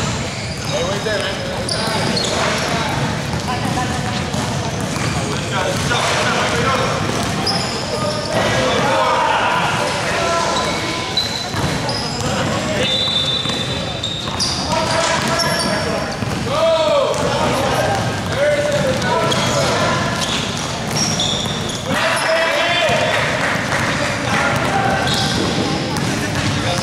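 Live indoor basketball game: the ball bouncing on a hard gym court as it is dribbled, players calling and shouting, and short high sneaker squeaks, all echoing in the hall.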